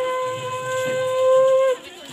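Conch shell (shankha) blown in one long, steady note that lifts slightly in pitch and cuts off sharply shortly before the end.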